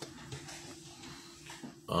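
Quiet room tone with a faint steady hum and a few small clicks, then near the end a man's drawn-out, grunt-like "uh".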